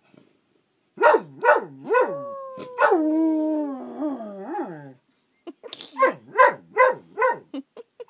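Dog howling with its muzzle raised: after about a second of quiet, a run of short wavering howls slides into one long falling howl, then after a brief pause comes a quick string of short yelping howls, about three a second.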